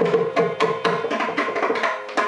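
Mridangam solo in a Carnatic tani avartanam: rapid ringing strokes on the drum heads, about six a second, over a steady tambura drone.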